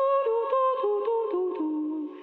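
A woman singing unaccompanied into a microphone: a quick run of sustained notes stepping down in pitch, ending on a held lower note near the end.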